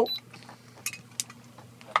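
A few short, light clicks and clinks of heavy gold chains and pendants being handled, the clearest two a little under and a little over a second in.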